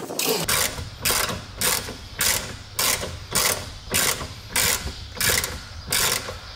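Hand ratchet wrench being swung back and forth on a bolt at a car's rear brake, each swing giving a short burst of pawl clicks, about ten in a steady rhythm of nearly two a second.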